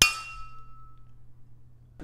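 Two beer glasses clinked together in a toast: one sharp clink right at the start, ringing on for about a second as it fades.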